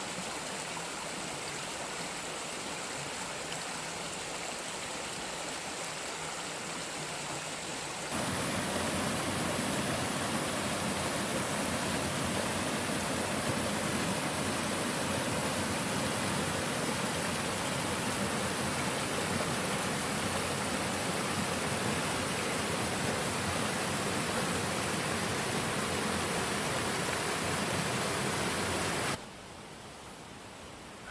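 Creek water rushing steadily over rocks. About eight seconds in it becomes louder and fuller, as small cascades are heard, then falls away sharply near the end.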